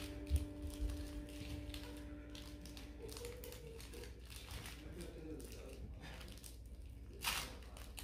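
Plastic candy wrapper crinkling in a child's fingers as she works to open a small piece of hard candy: faint, irregular crackles throughout, with a louder rustle near the end.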